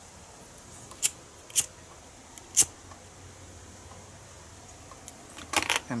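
Handheld butane torch lighter shrinking heat-shrink tubing: three sharp clicks about a second in, half a second later and a second after that, over a faint steady background noise.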